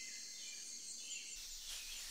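Faint tropical rainforest ambience: a steady high-pitched buzz of insects with a few soft bird chirps.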